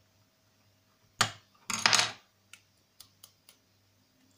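Small metal pieces knocking and clinking on a tabletop as a thin pure-tin pendant and a small hand file are handled: one sharp knock, then a rough half-second clatter, then a few light clicks.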